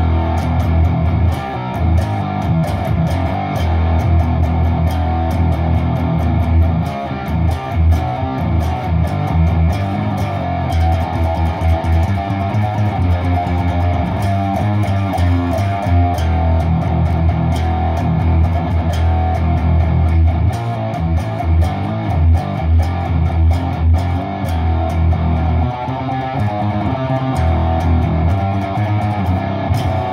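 Electric guitar played through a PedalPCB Promethium, a clone of the Boss HM-2 Heavy Metal distortion pedal, into a guitar amp and 4x12 cabinet. It is heavily distorted riffing that runs on without a break.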